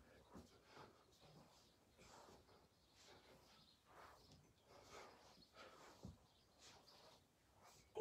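Near silence: faint, soft sounds of a person exercising on a floor mat, coming about once a second, with one low thud about six seconds in.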